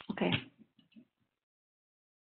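A woman's voice saying "okay", followed by a few faint short sounds in the next half-second.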